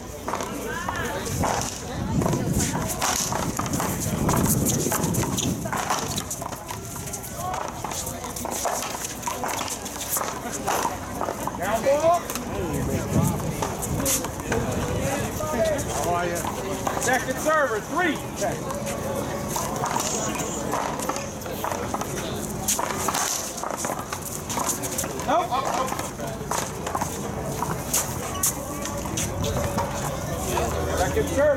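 Indistinct talk from players and onlookers, with scattered sharp knocks of the paddleball being hit with paddles and bouncing off the wall and concrete court.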